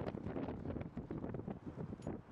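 Gusting wind buffeting the microphone: a rough, crackling rumble.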